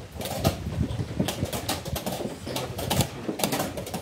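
Irregular sharp clicks and knocks of wooden chess pieces and chess-clock buttons from nearby blitz games, over a low, uneven background sound.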